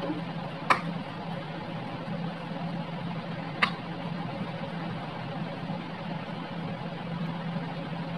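A fork clicks twice against the rim of a bowl while crab stick mixed with mayonnaise is stirred, once about a second in and again near the middle. A steady low hum runs underneath.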